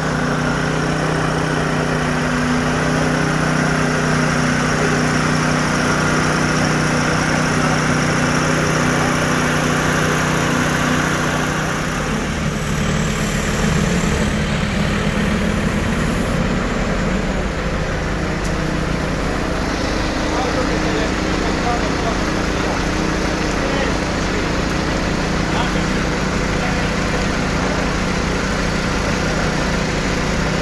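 Heavy work vehicles' engines idling steadily, a constant low hum. The engine sound shifts to a lower, rougher tone about twelve seconds in.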